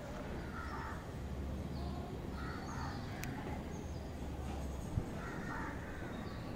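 Quiet outdoor background with faint bird calls now and then. There is a small sharp click about three seconds in and a soft low thud near five seconds.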